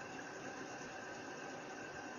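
Faint, steady hiss of room tone and microphone noise, with no distinct sound events.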